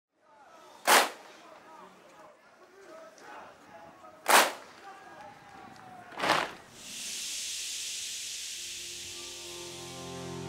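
Three sharp cracks, the first two about three and a half seconds apart and the third two seconds later. A steady high hiss then swells, and held music chords enter near the end.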